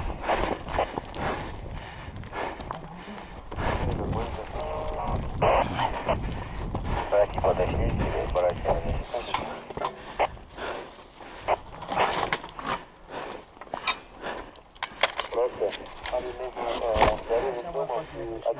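Hurried footsteps on concrete and loose gravel with clattering gear and handling rumble on a body-worn camera, a run of sharp clicks and knocks, with a few short indistinct voices.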